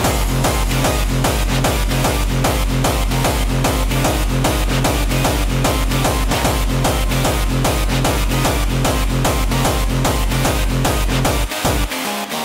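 Hardstyle dance music: a heavy kick drum on a steady beat of about two and a half kicks a second under synth layers, with the kick dropping out briefly near the end.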